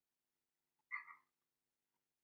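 Near silence, broken by one brief faint sound about a second in.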